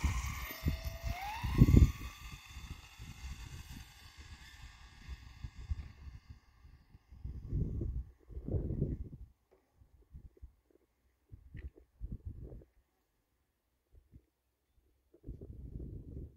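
Electric motor of a stretched Traxxas Bandit RC car whining and rising steeply in pitch as it accelerates hard from a standing start on a speed run, then fading over the next few seconds as the car races away. Scattered low rumbles follow, the loudest about two seconds in.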